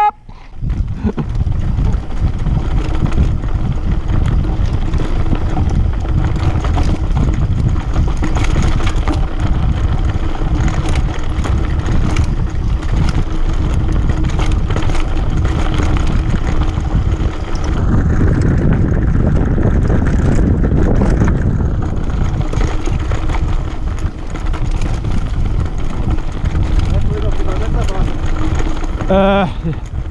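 Mountain bike rolling fast downhill over a forest gravel road and dirt trail: wind rushing over the microphone, with tyre rumble and the rattle of the bike over bumps throughout.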